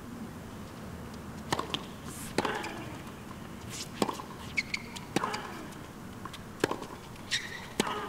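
A tennis ball bounced on a hard court, a sharp knock about every second and a half, six times. Under it is a low crowd murmur with a few scattered voices.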